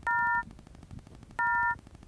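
Android phone's call-failure tone: two short three-note beeps about a second and a half apart, each starting with a click. It is the sign of a call that fails with an "Invalid number" error, which the owner traced to VoLTE calling being enabled.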